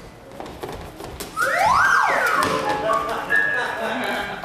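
A comic sound-effect whistle, like a slide whistle, glides up in pitch about a second and a half in, holds briefly and slides back down, over a few light knocks.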